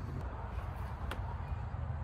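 Quiet outdoor background noise: a steady low rumble, with one faint click about a second in.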